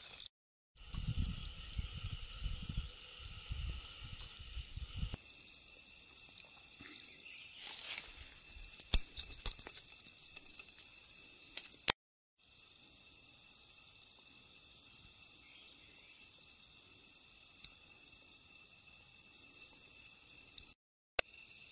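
Insects buzzing in a steady, continuous high-pitched chorus, with a low rumble on the microphone during the first few seconds. The sound cuts out completely for a moment twice.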